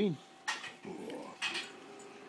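Rhodesian ridgeback making short sounds as it mouths a person's arm in play. There is a sharp noisy burst about half a second in, a brief faint whine, and another noisy burst near the middle.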